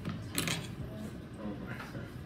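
A brief clatter of tableware about half a second in, over faint background voices.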